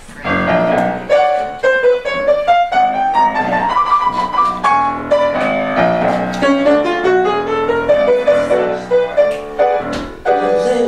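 Solo piano introduction to a song, with chords and rising runs of notes played on a grand piano.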